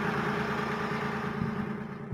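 Armoured personnel carrier's engine running, a steady drone with a haze of mechanical noise over it, easing off slightly near the end.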